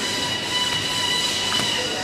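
Steady machine noise: a continuous hum with a high-pitched whine held on a few steady tones, and a faint click about one and a half seconds in.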